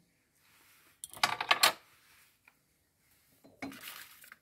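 Clatter of a metal table knife and a pastry brush being set down: a quick run of metallic clinks about a second in, and a shorter knock near the end.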